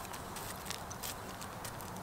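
Faint, scattered light crackles and ticks of wood-chip mulch shifting under a small child's hands or nearby feet, over quiet outdoor background.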